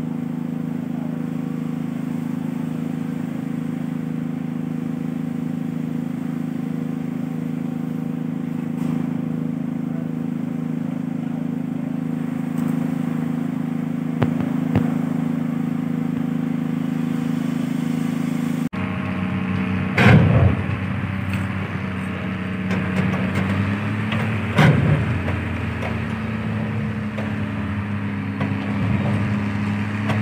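A steady low engine hum runs unchanging for about two-thirds of the time. The sound then changes abruptly to another engine hum that steps up slightly in pitch, broken by a few sharp knocks.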